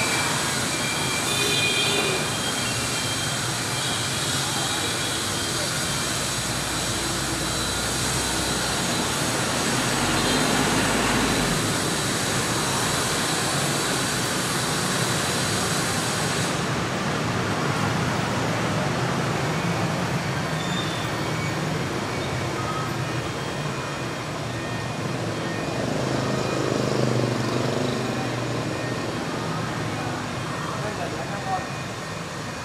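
Steady city traffic noise with faint voices mixed in.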